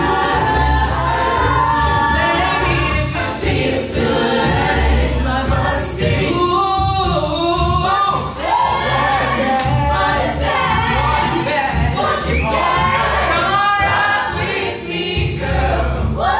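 Mixed-voice a cappella group singing live: a female lead voice over sung backing harmonies, with a pulsing low bass line and beatboxed vocal percussion clicking in time.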